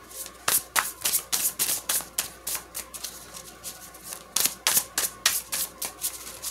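A deck of tarot cards being shuffled by hand: an irregular run of sharp card snaps, about three or four a second.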